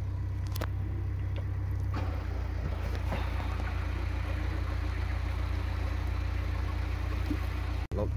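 Narrowboat's inboard diesel engine running steadily at low speed.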